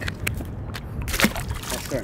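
A few light clicks, then the splash of an electric ray dropped back into the water, about a second in.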